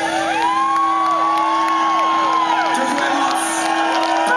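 Concert crowd cheering and whooping, with many overlapping rising-and-falling whoops and whistles. Underneath runs one steady held synthesizer note.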